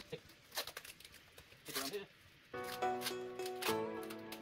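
Packing tape being pulled off the roll and wound around a rice-filled plastic bag, a few short rasps and crinkles. Background music comes in about halfway through.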